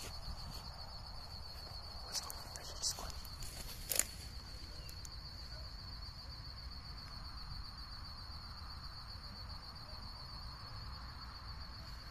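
A steady, high-pitched trill from night insects, most likely crickets. A few sharp snaps or steps in the undergrowth come in the first four seconds, the loudest about four seconds in, over a low rumble of handling.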